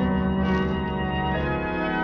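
Organ music bridge from a 1940s radio drama: held chords, with some notes shifting a little past halfway.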